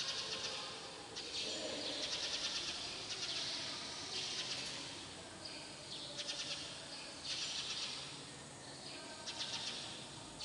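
Birds chirping in short, rapidly pulsed bursts that repeat about every second.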